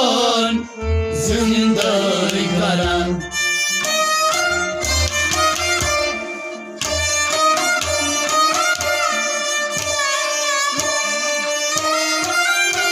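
Instrumental music from a Kashmiri Sufi song: a melody instrument plays over hand-drum beats.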